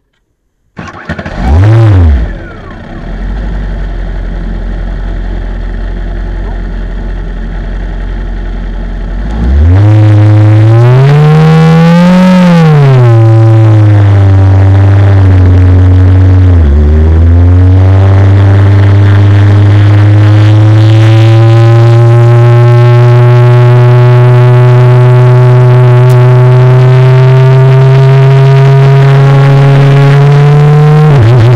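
Formula Renault 2.0 single-seater's four-cylinder engine firing up about a second in with one quick blip of revs, then idling. From about ten seconds in it revs up and down as the car pulls away, dips briefly once, then runs loud and steady with the pitch climbing slowly as the car accelerates.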